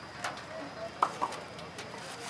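Plastic carrier bag crinkling in short bursts as it is handled and filled with puris, with a few brief chirps in the background.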